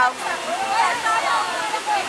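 People talking and calling out over a steady rushing hiss of surf on the beach.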